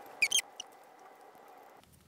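Two quick high-pitched squeaks close together, each rising in pitch, about a quarter second in, over faint steady room noise.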